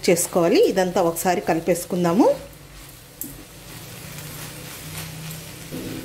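A woman speaking for the first two seconds. Under and after her voice, shredded cabbage and soaked moong dal fry gently in a pan over a medium flame with a faint sizzle, stirred with a wooden spatula. There is a light click about three seconds in.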